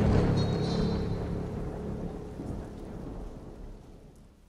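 A rumble of thunder over rain, with a low sustained music chord, fading away steadily: the tail of an intro sound effect.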